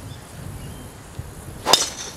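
A golf driver striking a teed-up ball: one sharp crack of impact near the end of a quiet stretch.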